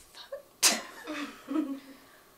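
A person sneezes once, sharply, a little over half a second in, followed by brief voice sounds.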